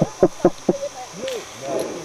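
Several sharp clicks and knocks from skydiving gear being handled as a soft skydiving helmet is taken off, with brief voices around it.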